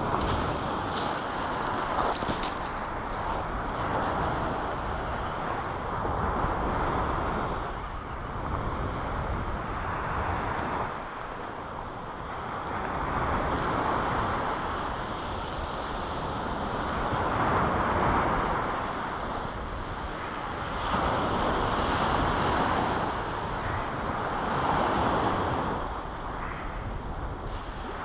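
Sea waves breaking on a shingle beach, the wash swelling and fading every four to five seconds. A few brief clicks sound about a second in.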